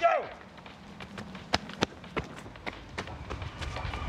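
Running footsteps on tarmac: a string of quick, sharp, uneven footfalls.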